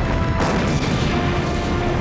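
Sci-fi starship explosion sound effect: a heavy boom right at the start and a second blast about half a second in, rumbling on afterwards. Underneath is dramatic film score with held notes.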